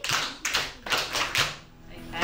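Hands clapping a quick rhythmic pattern, several people clapping together, about half a dozen claps that die away shortly before the end.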